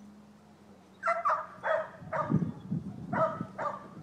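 A stock dog barking in short, sharp yaps: a run of four starting about a second in, then two more a second later. Under them, cattle hooves thud on soft arena dirt as the cattle trot.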